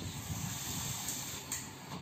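Brother KH-851 knitting machine carriage, motor-driven along the needle bed, making a steady hissing rush as it sweeps over the needles to cast on.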